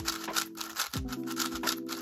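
GAN 562M magnetic 5x5 speed cube being turned quickly by hand: a dense, irregular run of plastic clicks and clacks as the layers rotate. Background music with sustained notes plays throughout.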